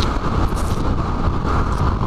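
Motorcycle cruising at about 75 km/h, its engine running steadily, with wind rushing over the microphone.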